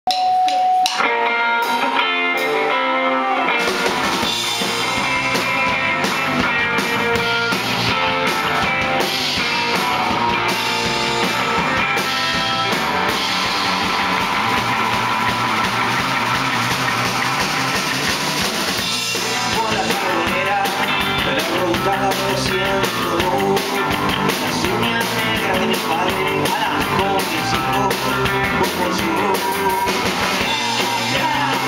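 Live rock band playing: an electric guitar opens alone, then drums and bass come in about four seconds in and the full band plays on.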